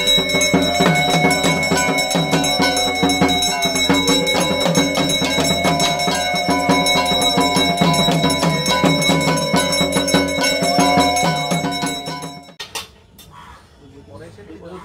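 Puja bells and jingling percussion ringing continuously and rapidly, with steady high ringing tones over a fast rattle, stopping abruptly near the end.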